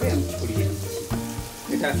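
Cut green capsicum sizzling as it fries in hot oil in a wok, under steady background music.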